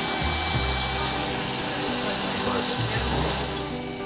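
Electric animal hair clippers running with a steady buzz as they shave fur from around a kitten's eye in preparation for surgery.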